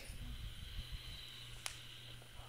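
Faint steady hiss with low handling rumble, and one sharp small click about three-quarters of the way through.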